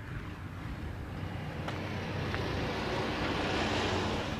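Rushing noise of a passing vehicle, growing steadily louder.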